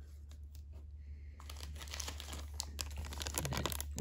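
A thin clear plastic bag holding a model kit's clear parts tree crinkling as it is handled, starting about a second and a half in and getting busier toward the end.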